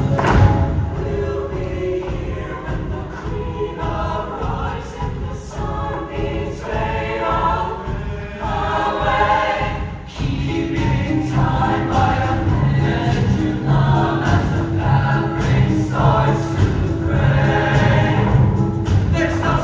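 Show choir singing in full voice over an upbeat instrumental accompaniment with a steady beat. The music dips briefly about ten seconds in, then the beat and bass come back in.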